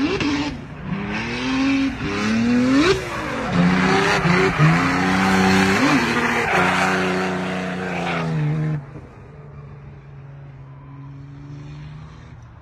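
A drift car's engine revving up and down, with its tyres squealing through a sideways slide. The noise drops away suddenly about nine seconds in, leaving a quieter, steady engine note.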